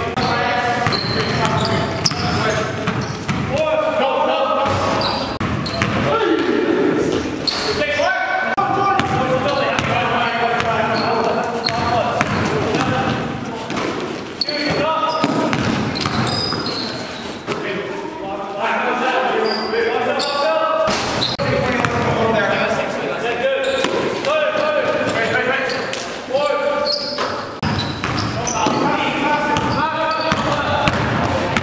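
Basketball being dribbled and bounced on a gym floor, the bounces echoing in a large hall, under ongoing talk and calls from people on and around the court.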